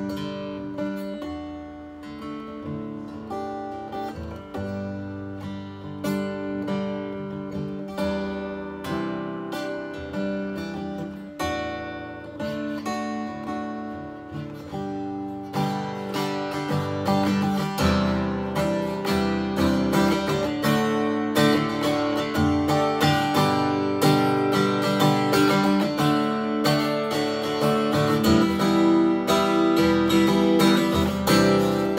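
Steel-string acoustic guitar being played solo, at first with picked single notes and chords. About halfway through it becomes louder, denser strumming.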